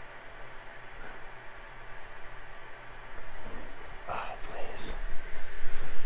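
The small cooling fans on a 3D printer's print head run with a steady hum and hiss while the hotend heats up. A few brief rustles and some faint vocal sounds come in over the second half.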